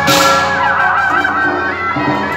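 Beiguan procession music: a shrill, wavering suona melody over steady drum and gong strokes about twice a second, with a cymbal crash at the start.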